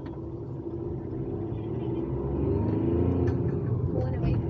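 Car engine and road rumble heard from inside the cabin, growing steadily louder as the car picks up speed on a hill road.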